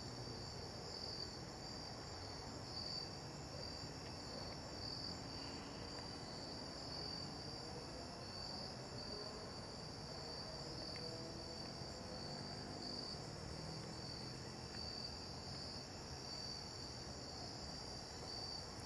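Steady evening chorus of crickets, a high-pitched trill that pulses evenly throughout, over faint low background noise.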